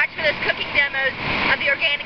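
A woman speaking, with the steady rush of river water behind her voice.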